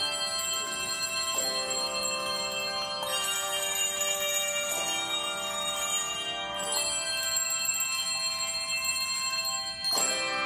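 Handbell choir ringing sustained chords of many bells at once, with a new chord struck every couple of seconds, each ringing on into the next.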